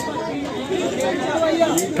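Chatter: several people talking over one another.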